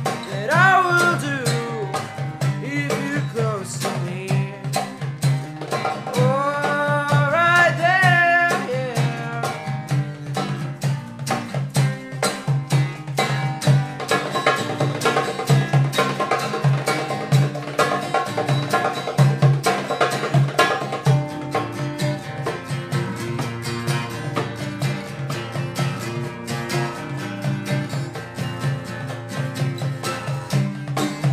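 Acoustic guitar strummed in a steady rhythm with a darbuka (Arabic goblet drum) beating along. A voice sings long held notes that slide in pitch over the first nine seconds or so, after which the guitar and drum carry on alone.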